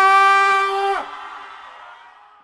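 A singer's amplified voice holds one long steady note, which breaks off about a second in, followed by a fading echo.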